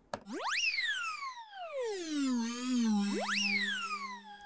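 A software synth pad (Ableton Wavetable, Airlite preset) plays one note. Its pitch, bent by MPE note expression, swoops sharply up and then glides slowly back down, twice, and settles on a steady low tone near the end.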